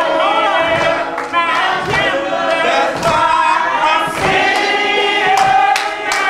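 Congregation singing an old-school gospel song together, several voices at once, with scattered hand claps.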